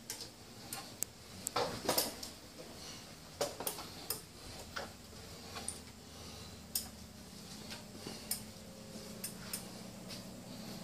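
Irregular light clicks and taps, about a dozen spread unevenly through the stretch, over a faint steady hum: footsteps and handling noise from people walking through a house with a hand-held camera.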